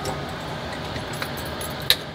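Steady background noise with a few faint ticks and one sharp click near the end.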